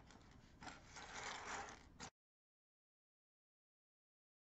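Faint rubbing and a couple of light clicks of small plastic LEGO pieces being handled and moved about on a tabletop; about two seconds in, the sound cuts off to dead silence.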